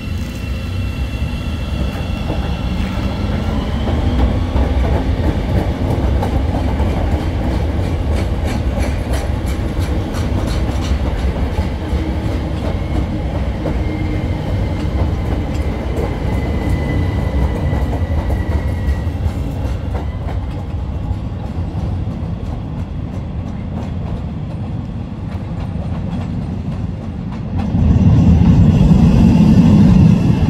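Chicago 'L' Red Line rapid-transit train running, its motor whine rising in pitch over the first few seconds as it picks up speed, then the wheels clattering over rail joints. A louder low rumble comes in near the end.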